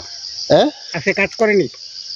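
A steady, high-pitched chorus of insects in the background, with a man's voice speaking briefly over it.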